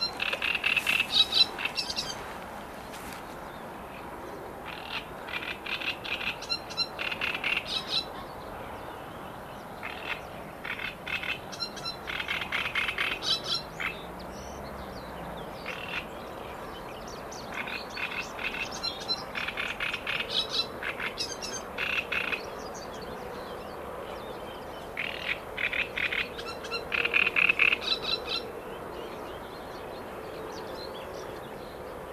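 Frogs calling in a chorus: bouts of rapid pulsed croaks, each one to two seconds long, repeating every few seconds.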